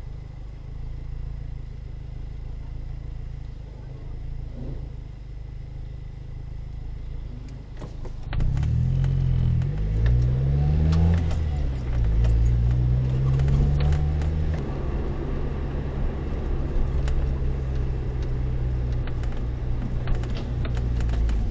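Car engine idling, heard from inside the cabin, then from about eight seconds in revving up as the car pulls away, the pitch rising, dipping once near eleven seconds and rising again before settling into steady running.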